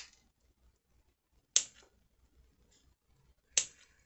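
Scissors snipping the tips off a sprig of artificial greenery: three sharp snips, about two seconds apart.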